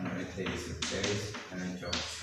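A man's voice speaking, with chalk tapping on a blackboard as numbers are written.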